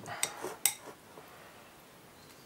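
A spoon clinking against a bowl while stirring muesli of oats, yogurt and milk: a few sharp clinks in the first second.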